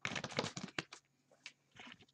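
A deck of tarot cards shuffled by hand: a quick run of light card clicks for about the first second, then a few scattered clicks and a soft rustle near the end.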